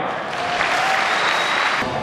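Audience applauding, a steady clapping across the whole moment, with a faint held tone under it.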